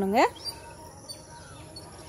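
Faint outdoor garden background: a steady high insect drone with a few faint bird chirps.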